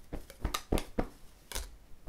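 Plastic vacuum-pack bag crinkling and crackling in a few short, sharp bursts while a plush cushion is pulled out of it and handled.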